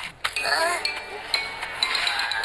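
Cartoon soundtrack: short wordless character vocalising, with several high, bell-like clinking notes over music.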